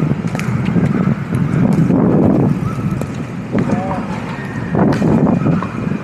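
Pickleball paddles striking the ball during a rally: several sharp pops spaced a second or more apart. Players' voices call out briefly over a low, steady rumble of street noise.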